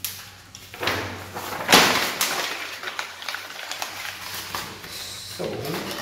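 Sheets of paper being crumpled and rustled by hand and pressed into a cardboard box as padding, with the loudest crackle about two seconds in.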